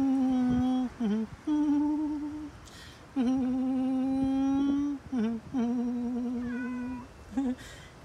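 A woman humming a slow, wordless melody: four long, steady held notes with short dipping notes between them.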